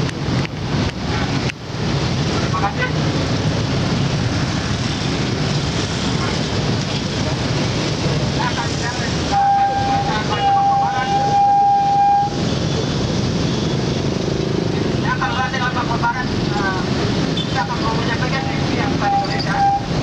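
Street rally sound: a continuous rumble of traffic with wind on the microphone, and at times a man's voice through a handheld megaphone. A steady high-pitched tone sounds twice, for about three seconds starting about nine seconds in and for about two seconds near the end.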